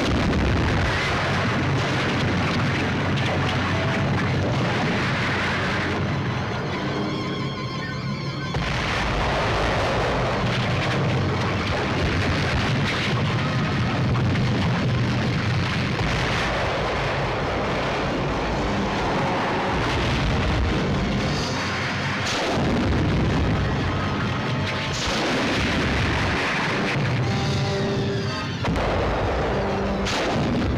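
Volcanic eruption sound effects, a continuous deep rumble with booms, under dramatic film score music.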